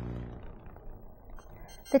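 A quiet gap: a low tone fades out in the first half second, leaving faint hiss, and a woman starts to speak at the very end.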